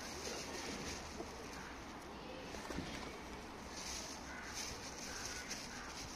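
Feral pigeons in a feeding flock cooing low, over a steady outdoor background hum.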